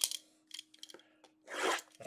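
Hands handling a shrink-wrapped cardboard box of trading cards: a sharp click, a few light clicks and a short scrape near the end, over a faint steady hum.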